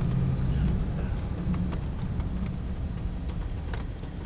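Steady low rumble of a car moving at road speed, heard from inside the cabin: engine and tyre noise.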